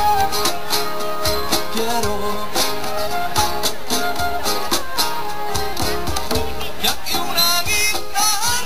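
Live band playing an instrumental passage in a Spanish pop style with flamenco touches: acoustic guitars strummed, hand drums keeping a steady beat, and a melody line on top.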